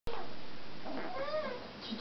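African grey parrot giving a meow-like call: one pitched note that rises and then falls, about a second in.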